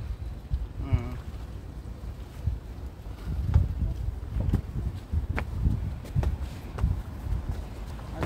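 Wind buffeting the phone microphone outdoors: an irregular low rumble that rises and falls, with a few faint clicks.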